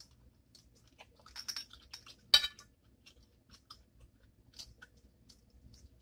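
A person biting and chewing food close to the microphone. There are a few crisp crunches, the loudest about two and a half seconds in, among small clicks and wet mouth sounds.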